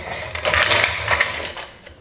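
Plastic parts of a Hasbro Rescue Bots Heatwave transforming toy clicking and rattling as it is folded into its fire-truck form: a dense run of rapid clicks that dies away near the end.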